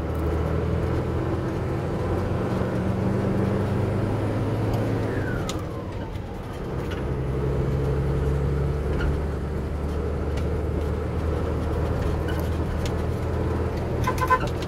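Truck engine running as the truck drives along a road, heard from inside the cab, with road noise. The engine note eases off about five to six seconds in, then picks up again. A brief falling squeak comes about five seconds in.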